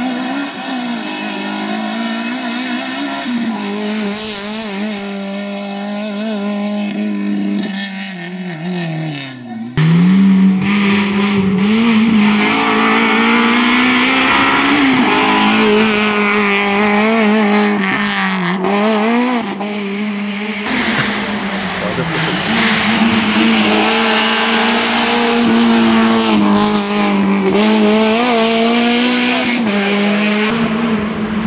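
Suzuki Swift rally car's engine revving hard on a tarmac special stage, its note rising and falling over and over with throttle and gear changes. About ten seconds in it suddenly becomes louder and closer.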